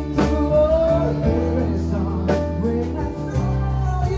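Live band playing a song: a singer over violin, keyboard and guitar.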